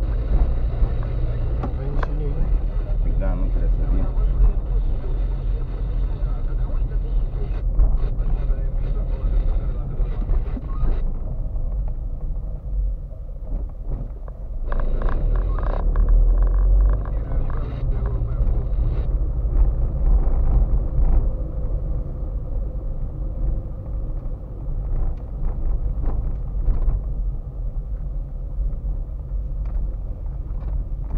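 Car driving slowly over rough, broken pavement, heard from inside the cabin: a steady low engine and tyre rumble, with scattered knocks and rattles from the bumps, loudest about halfway through.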